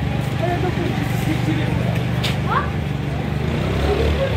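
Street ambience: a vehicle engine running steadily, giving a low even hum, with indistinct voices of passersby over it and a brief rising call a little past two seconds in.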